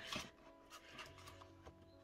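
Faint background music with steady held notes, with a soft rustle and a light tap near the start and another faint tap near the end as plastic binder sleeves are flipped.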